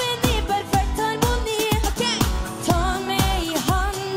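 Live pop music with a kick drum on every beat, about twice a second, under a sung melody.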